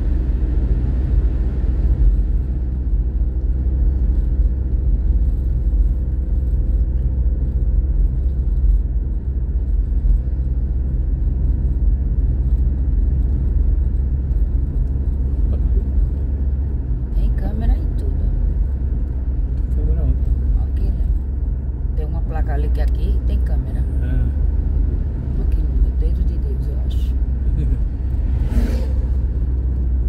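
Car driving on a paved highway, heard from inside the cabin: a steady low rumble of engine and tyres, with an even engine hum clearest in the first half.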